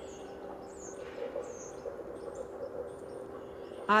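Outdoor ambience: a few short, faint bird chirps over a steady low hum.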